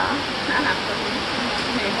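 Heavy rain pouring down, a steady even hiss.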